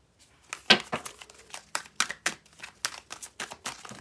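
Tarot deck being shuffled by hand, a run of sharp, irregular clicks and slaps of cards starting about half a second in.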